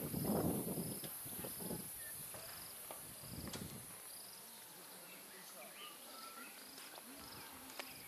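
Insects chirping in a regular rhythm, about one to two short chirps a second, over a steady high-pitched hiss. Louder low indistinct sounds come in the first two seconds and again briefly about three and a half seconds in.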